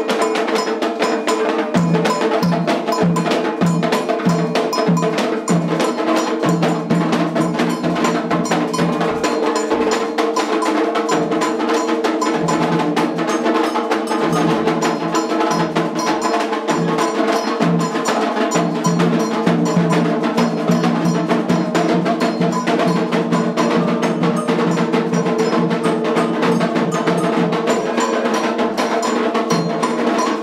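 Candomblé ritual percussion: metal bells struck or shaken in rapid, continuous strokes with a steady ringing tone. A deeper beat comes about twice a second in the first several seconds, then turns irregular.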